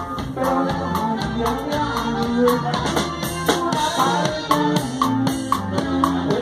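Live norteño-sax band music: a drum kit keeps a steady beat under held melody notes.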